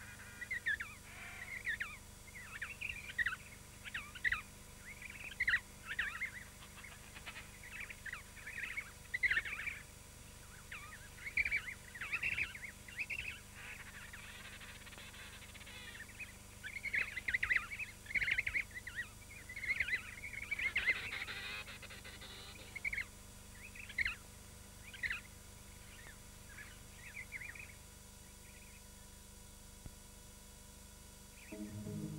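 Newly hatched emperor penguin chick peeping: a long run of short, high-pitched whistled calls, about one a second. The calls come thickest past the middle and thin out toward the end.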